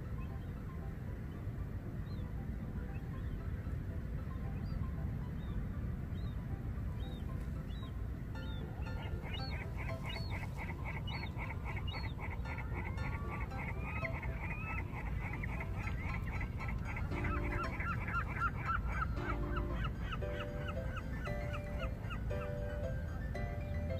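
A flock of waterbirds calling. Scattered single calls at first, then from about nine seconds in a dense chatter of rapid repeated calls with a few lower honks, over a steady low rumble.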